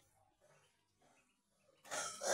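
Near silence with faint, scattered peeps from ducklings in a box, ended by a sudden loud noise right at the very end.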